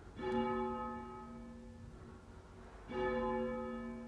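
A single church bell tolling, struck twice about two and a half seconds apart, each stroke ringing on and slowly dying away.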